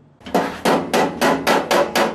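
Hammer striking the sheet-metal body of a barbecue grill (mangal) during its making, a quick, even run of about seven strikes, three or four a second, starting a moment in.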